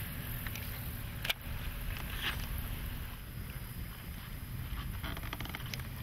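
Steady low rumble of wind and water on an open fishing boat, with a single sharp click just over a second in.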